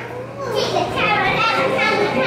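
Several children's high voices chattering and calling out excitedly over one another, with a steady low hum underneath.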